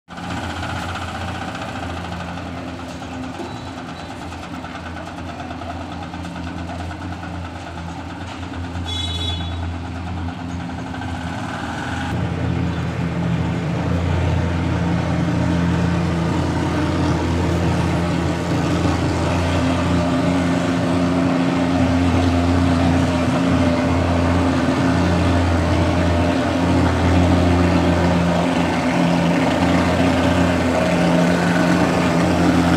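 Insecticide fogging machine running with a steady, loud engine drone that grows louder about twelve seconds in.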